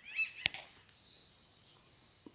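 A single short bird chirp about a quarter second in, followed by a sharp click, over faint, steady high-pitched outdoor background.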